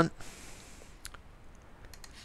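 A single short click about a second in, over faint steady hiss: a computer mouse or key being pressed while the file is saved.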